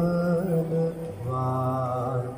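Song accompanying a dance: a singer holds long, steady chant-like notes, stepping down to a lower note about a second in.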